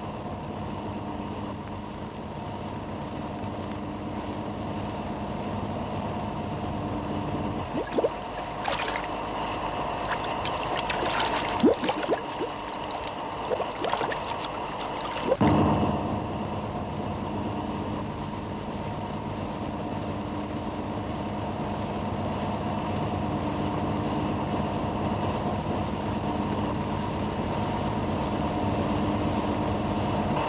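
Water gurgling and bubbling over a steady low hum, with a few louder splashy gurgles in the middle.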